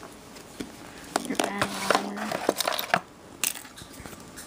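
Small plastic toys and their packaging being handled: a string of clicks, knocks and light clatter, with a short steady hum in the middle.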